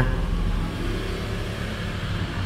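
Road traffic: a steady low engine rumble of passing vehicles.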